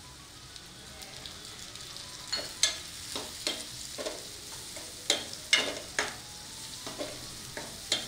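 Chopped onions and tomatoes frying in oil in a non-stick kadai, a low sizzle at first. From about two seconds in, a spatula stirs and scrapes through them against the pan in sharp, irregular strokes.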